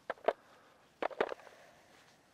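Golf iron striking golf balls off turf in short, small drill swings: two crisp clicks about a second apart, each with a quick secondary tick.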